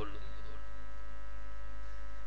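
Steady electrical mains hum: a low drone with a row of faint, higher steady tones above it.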